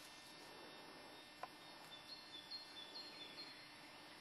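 Near silence: faint outdoor background hiss with a few faint, short, high bird chirps in the second half and a single faint tick about a second and a half in.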